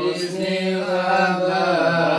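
Unaccompanied male chanting of a devotional song in a terbang jidor ensemble: one long drawn-out sung line, pitch held and then sliding up and down, with no drum strokes.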